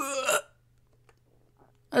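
A person's voice making one short pitched sound, about half a second long, right at the start, then near silence with a faint steady hum.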